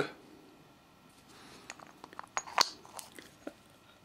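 Steel hand taps being handled and swapped between the fingers: mostly quiet, with a handful of small clicks and light scrapes in the middle, the sharpest about two and a half seconds in.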